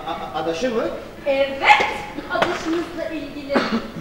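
Speech only: actors' dialogue on stage.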